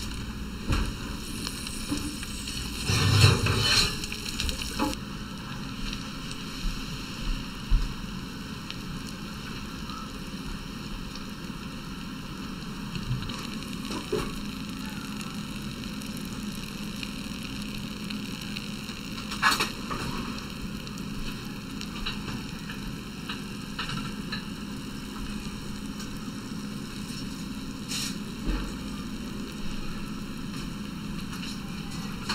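Oil and juices sizzling faintly in a hot baking dish of stuffed eggplant, over a steady hum, with a few brief knocks: one cluster a few seconds in, another about two-thirds through and one near the end.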